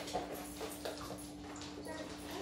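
Dogs' claws and feet tapping on a hardwood floor, a scatter of irregular light clicks, over a steady low hum.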